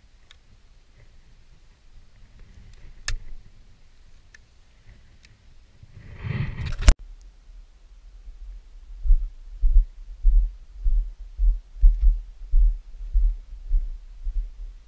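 A few sharp clicks as a shell is loaded into a single-barrel break-action shotgun, with a rustle and a loud clack a little past the middle. From about nine seconds in come regular dull thuds of walking footsteps, about one and a half a second, picked up through a body-worn camera.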